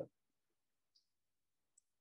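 Near silence with a faint short click about a second in and a fainter one near the end.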